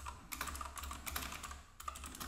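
Typing on a computer keyboard: a quick run of keystrokes, with a brief pause near the end.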